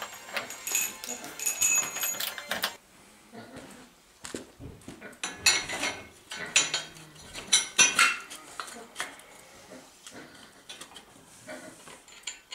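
Metal clinks and rattles from handling the steel-and-timber dibber drum and its bolts, with short ringing metallic notes. The clinks come in two spells with a lull about three seconds in.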